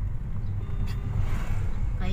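Steady low engine and road rumble of a car heard from inside the cabin while riding, with a short click about a second in.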